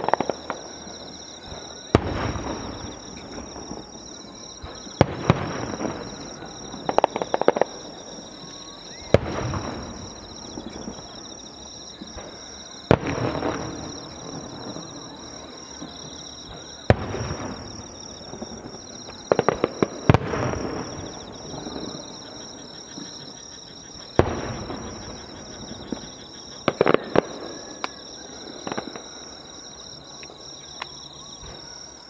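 Aerial firework shells bursting: sharp bangs every two to four seconds, some in quick crackling clusters, each trailing off in an echo. A steady high chirring of insects runs underneath.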